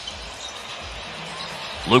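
Basketball dribbled on a hardwood arena court: a few low bounces over a steady hiss of arena noise.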